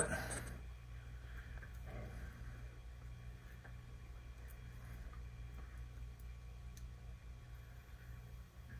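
Quiet room tone: a steady low hum with a few faint clicks while the nitrogen fill kit is handled; no clear hiss of gas flowing is heard.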